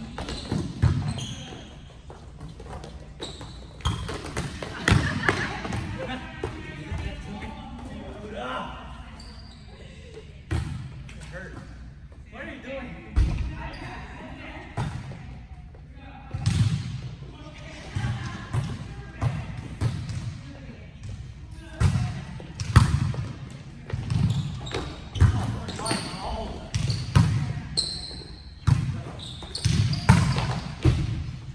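Volleyball being played on an indoor court: sharp smacks of the ball off players' hands and thuds of the ball on the floor, echoing in a large hall. From about the middle there is a steady run of low thuds, roughly one a second.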